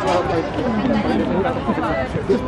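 Several people talking at once in the background: overlapping chatter from players and onlookers around an outdoor court.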